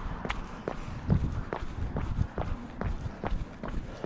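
Running footsteps on a concrete sidewalk, an even footfall about every 0.4 seconds, over a low rumble.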